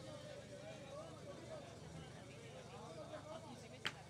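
Faint murmur of distant voices, then near the end a single sharp metallic clack with a short ring: a thrown steel pétanque boule striking the target boule, a hit worth three points in precision shooting.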